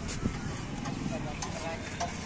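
Open-air street-food market ambience: a steady low background noise with faint voices and a few light clicks.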